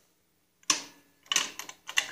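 A few sharp metallic clicks of small steel hardware being handled and fitted by hand: washers and a self-locking nut going onto a stud. There is one click about two-thirds of a second in and a quick cluster in the second half.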